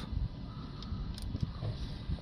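Low steady rumble of the Ford Mondeo's 1.6 TDCi diesel engine idling, with a few small plastic clicks as the boost (MAP) sensor's electrical connector is unplugged.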